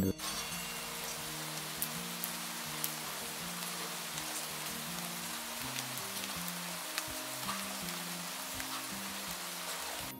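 Steady rushing of a waterfall, with soft low music notes moving in steps beneath it.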